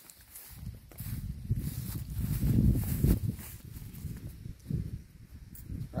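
Low rumbling noise of a handheld phone being moved and turned around, with footsteps through grass.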